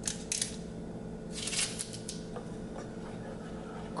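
Wooden spoon stirring thick tomato sauce in a small nonstick saucepan: a few short scraping strokes, two quick ones at the start and a longer one about a second and a half in, with a couple of light ticks after.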